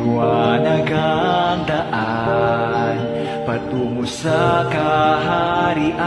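Music: a song with a sung melody over sustained instrumental backing, phrased in short lines.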